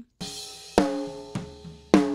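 Raw, uncompressed snare drum recording playing back: three strong hits and a softer one, about every 0.6 s, each followed by the drum's ringing tone fading away, the loudest hit near the end.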